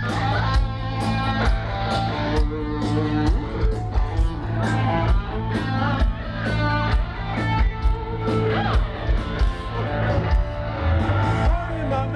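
Live rock band playing loudly: guitars over bass and a steady drumbeat, heard from within the audience.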